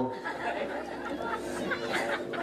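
Indistinct chatter: several voices talking at once, low and overlapping, with no single clear speaker.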